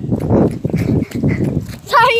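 Running footfalls on grass and hard breathing, with wind and handling noise rumbling on a phone's microphone as it is carried at a run.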